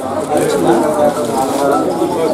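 Many voices of children and adults talking over one another: steady crowd chatter in a classroom.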